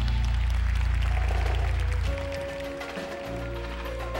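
Indoor percussion ensemble music: a low chord held after a full-ensemble hit, giving way about two seconds in to a softer chord with a higher held note, with faint stick ticks underneath.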